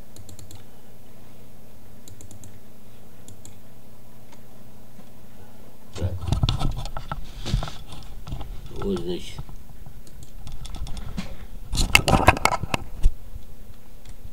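A steady low hum, then from about six seconds in bursts of rapid clicking and rustling, like a computer keyboard and mouse being worked, the densest run of clicks near the end.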